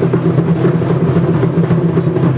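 Fast, continuous drumming over a steady low drone.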